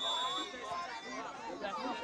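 Several spectators' voices talking and calling out at once, overlapping chatter without clear words.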